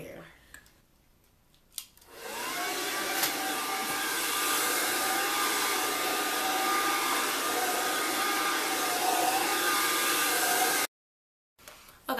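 Kiss Red Pro 1875 ceramic blow dryer with a comb attachment, drying a weave. After a click about two seconds in, it spins up with a rising whine, runs steadily and then cuts off abruptly near the end.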